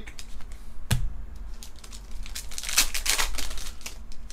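Pokémon trading cards being flicked through by hand: one sharp snap about a second in, then a quick run of crisp card-on-card clicks and rustles near the end.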